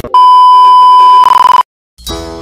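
A single loud, steady test-tone beep of the kind played with TV colour bars, held for about a second and a half; it turns rough near the end and cuts off suddenly.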